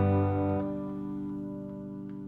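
The song's final guitar chord ringing out and fading away. The low bass notes stop about half a second in, leaving the higher strings to decay.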